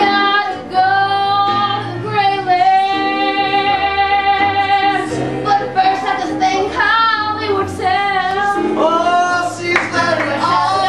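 A woman singing long held notes, some with vibrato, over live electric keyboard accompaniment.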